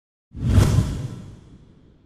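A whoosh sound effect from a TV news graphic, starting sharply a moment in and fading out over about a second and a half.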